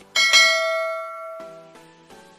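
Bell-chime sound effect for a notification-bell icon: two quick strikes, then ringing that fades over about a second and stops. Soft background music carries on underneath.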